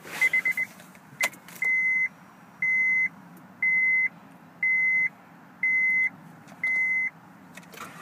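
2012 Honda Ridgeline's dashboard warning chime, with the ignition on and the engine not yet running. A quick run of short chime pulses comes first, then a single click, then six steady beeps about a second apart.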